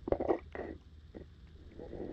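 Muffled knocks and low rumbling of water movement through a submerged camera's housing: a quick cluster of knocks in the first half second, a single click about a second in, and rumbling building again near the end.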